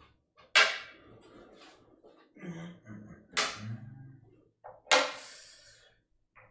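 Three sharp bangs: about half a second in, past the middle and near the end. Each dies away quickly.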